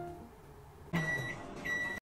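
Microwave oven beeping twice about a second in, two steady high beeps each about a third of a second long, over the low hum of the oven: the end-of-cooking signal.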